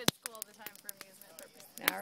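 Wood campfire crackling, with sharp pops scattered irregularly throughout and the loudest snap right at the start.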